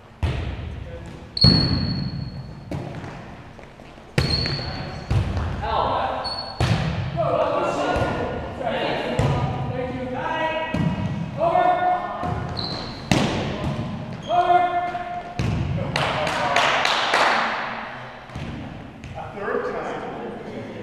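Indoor volleyball being played in a large, echoing gym: sharp smacks of hands on the ball and the ball hitting the hardwood floor, with short high shoe squeaks. Players' voices call out through the middle of the rally, with a loud burst of shouting near the end.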